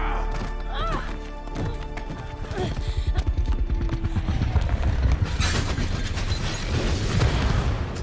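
Film soundtrack: loud, driving action music with a man's yell about a second in and a heavy crashing boom in the second half.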